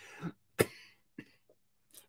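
A man coughing: one sharp cough about half a second in, after a short breath, then a faint small catch a little later.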